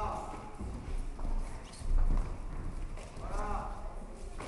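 Boxers' feet stepping and shuffling on the ring's canvas platform, giving irregular dull thuds, with a louder thump about two seconds in. A voice calls out from ringside at the start and again about three seconds in.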